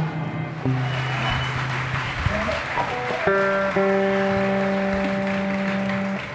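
Audience applause as a song ends, then the band comes in with steady held chords about three seconds in.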